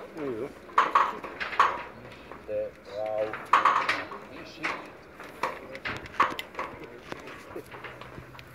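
People talking, with sharp clinks at irregular intervals, roughly one a second.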